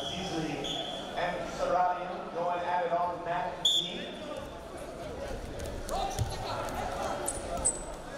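A referee's whistle: a couple of short blasts, then one sharp blast about four seconds in that starts the wrestling bout. After it come thumps and slaps as the two wrestlers tie up and grapple on the mat, with voices calling out.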